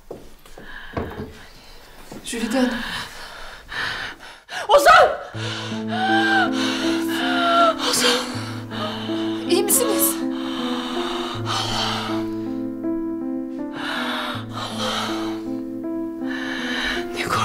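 A woman gasping and breathing hard as she is startled awake from a nightmare, with a sharp loud gasp about five seconds in, then crying out and sobbing. Soft sustained background music enters just after the gasp and carries on.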